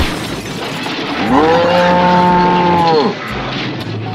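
A cow mooing: one long moo starting about a second in, held steady for about two seconds and dropping in pitch as it ends.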